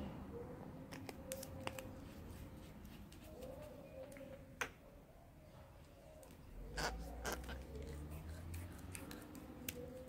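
Handling noise from glass nail polish bottles and their plastic caps being picked up and set down, with long acrylic nails tapping them: scattered sharp clicks and taps, and a dull bump about two-thirds of the way through.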